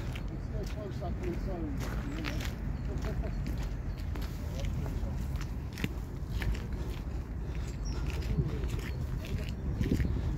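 Footsteps on tarmac, irregular clicks and scuffs, under quiet background voices and a steady low rumble.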